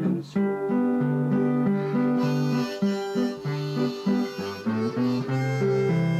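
Acoustic guitar strummed with alternating bass notes, joined about two seconds in by a neck-rack harmonica playing the melody in an instrumental break between sung verses.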